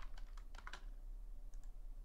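Computer keyboard keys tapped in a quick burst of about six clicks within the first second, then two fainter clicks about a second and a half in.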